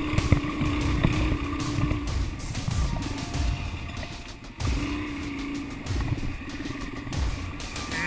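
Suzuki DR-Z400 single-cylinder four-stroke dirt bike engine running under way on a rough trail, with low thumps from bumps and wind on the bike-mounted camera. The engine sound drops off briefly about four and a half seconds in, then picks up again.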